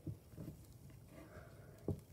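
Faint rustle of hands gathering a doll's synthetic hair, with one short click near the end.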